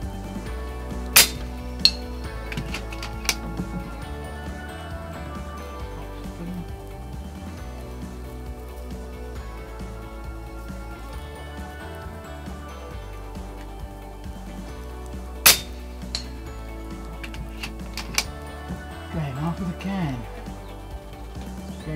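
Two sharp shots from FX Impact pre-charged pneumatic air rifles firing slugs, about fourteen seconds apart, each followed by lighter metallic clinks, over steady background music.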